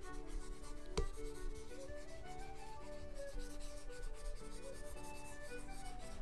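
Stylus rubbing on a drawing tablet in quick repeated brush strokes, with one sharp tap about a second in.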